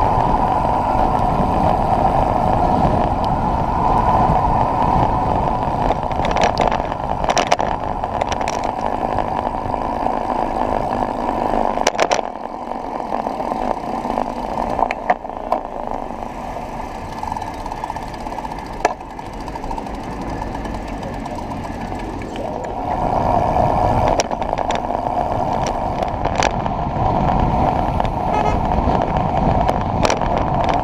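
Wind rushing over the microphone of a bike-mounted camera, with tyre and road rumble, as a road bike rides at speed. The noise eases off for several seconds around the middle while the bike slows through a town junction, then builds again as speed picks up. A few sharp clicks stand out.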